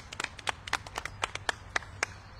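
A small group of people clapping: light, scattered applause of separate, uneven claps.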